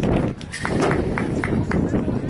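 Indistinct chatter of spectators near the camera, with a series of short sharp knocks in the second half.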